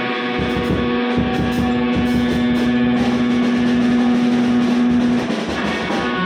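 Rock band playing live: an electric guitar holds one long note for about four seconds, from about a second in until near the end, over drums and cymbals.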